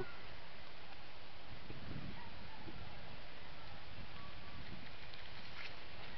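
Steady outdoor background noise: an even hiss with faint low rumbling, and no distinct event.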